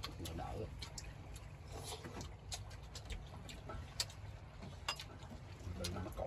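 Scattered light clicks and clinks of chopsticks against ceramic rice bowls and a metal pot as several people eat, over a low steady rumble.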